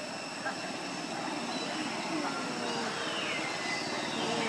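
Faint calls from macaques over a steady droning background, with a high squeal that falls in pitch near the end.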